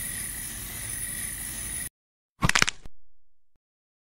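Cartoon sound effects: a steady hiss with a thin high ringing tone that cuts off suddenly just under two seconds in, then, after a short silence, one brief sharp crack that dies away.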